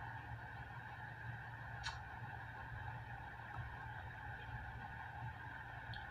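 Steady background hum, with one sharp click about two seconds in.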